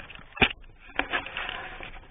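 Handling noise from a handheld camera being moved around inside a truck cab: a sharp knock a little under half a second in, a second, weaker knock about a second in, then rubbing and scuffing.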